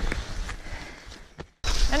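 Scuffing and rustling of a skier and dogs moving on snow, with a few light clicks, fading and then cutting off abruptly about a second and a half in.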